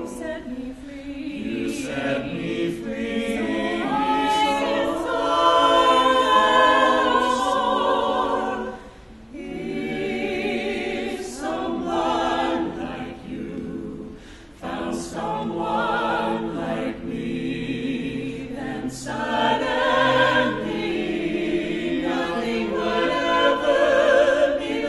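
Small mixed vocal ensemble of women's and men's voices singing together in harmony, in long phrases with brief breaks about nine and fourteen seconds in.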